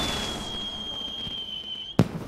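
A firework whistling on one high, slightly falling note over a crackling hiss, cut off by a sharp bang near the end.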